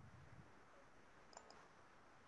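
Near silence: faint room hiss with faint low thuds at the start and a couple of short faint clicks about one and a half seconds in.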